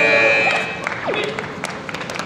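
Electronic end-of-round buzzer of the taekwondo scoring system, one steady tone that cuts off about a second in, over the noise of a sports hall.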